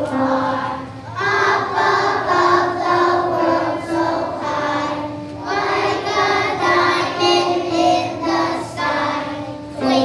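A class of kindergarten children singing a song together in unison, in phrases of held notes with short breaks between them.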